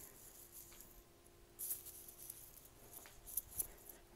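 Quiet background with a faint steady hum and brief soft rustles and scuffs, once about a second and a half in and a few more near the end.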